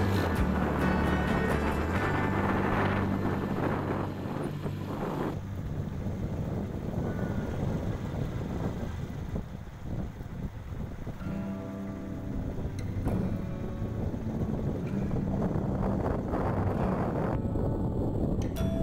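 A motorbike engine running as it rides along, with wind buffeting the microphone, and music playing over it; the engine hum drops away about five seconds in and comes back later.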